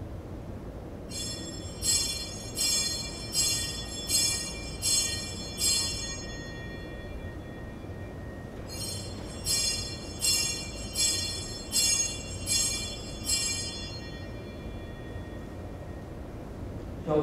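Small altar bell rung in two series of about seven high, ringing strikes, roughly one every 0.7 seconds, with a short pause between the series. These are the consecration bells at the elevation of the host and then of the chalice.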